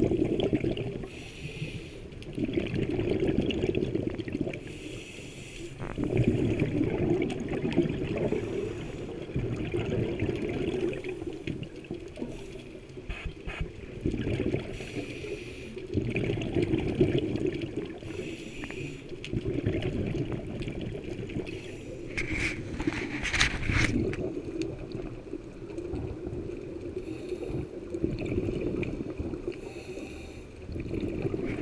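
Scuba regulator breathing underwater: exhaled bubbles gurgling in swells every three to four seconds, the rhythm of a diver's breaths. A short run of sharp clicks comes about three quarters of the way through.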